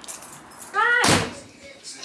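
A screen door being opened and banging shut about a second in, just after a short falling squeal.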